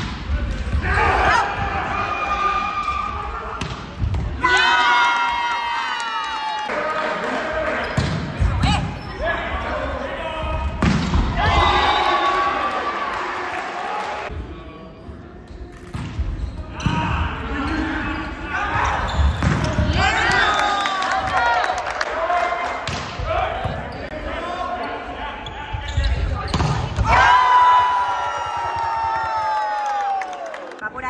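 Volleyball rallies: the ball is struck again and again in sharp smacks by serves, sets and spikes, mixed with sneakers squeaking on the hardwood court and players shouting. One long falling call sounds near the end.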